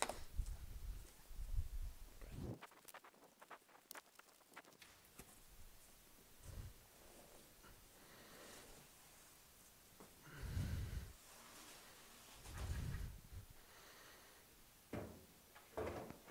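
Faint handling noises as a cardboard box is opened and a new stamped-steel fuel tank is slid out of it: rustling and scraping of cardboard with scattered light clicks, then a few dull thumps later on as the tank and box are moved and set down.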